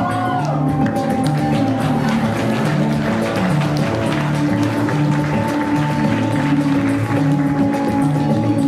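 Music with a repeating bass figure and held tones, steady throughout.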